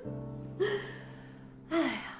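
A woman's short breathy laughs, twice, over soft background music on a held low note.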